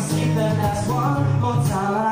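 Live solo song: a strummed acoustic guitar with a male voice singing.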